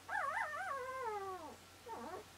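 A sleeping puppy whining: one long call that wavers up and down in pitch and then slides down, followed by a short second call near the end.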